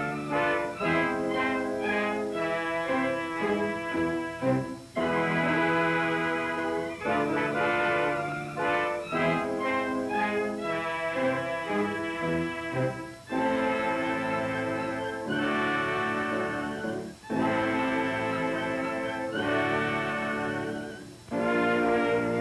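Orchestral background music led by brass, playing in phrases separated by a few brief pauses.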